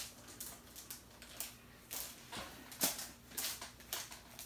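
Plastic packaging rustling and crinkling in short, irregular bursts as an item in a plastic bag is handled and pulled from a box.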